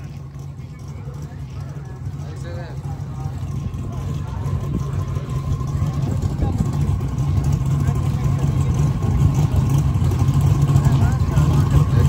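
Sixth-generation Chevrolet Camaro's engine idling with a low, steady rumble that grows louder as the car creeps up toward the starting line.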